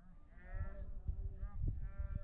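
Distant drawn-out shouted calls from players across a football pitch, with low wind rumble on the microphone and a single faint knock, typical of a ball being kicked, about two-thirds of the way in.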